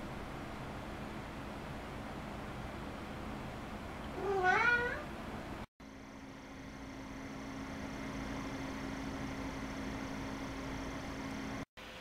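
Graphics card cooling fans at idle, heard close up. The MSI Twin Frozr II's twin axial fans give a steady soft whoosh, and a cat meows once, briefly, about four seconds in. A little before halfway it cuts to the reference GTX 560 Ti cooler's blower fan: a steady whir with a low, even hum that swells slightly at first.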